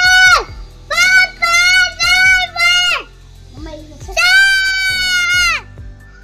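A child singing in a high voice: a run of held notes on nearly the same pitch, then one longer note that falls away at its end.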